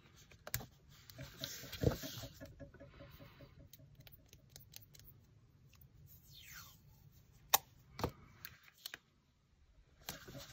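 Quiet handling of paper and washi tape on a craft table: soft rubbing as a tape strip is pressed down along a paper seam, a few sharp taps on the tabletop, and a brief rasp about six seconds in as the tape roll is handled.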